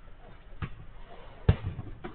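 A football being kicked during a small-sided game: two dull thuds, a softer one just over half a second in and a louder one about a second and a half in.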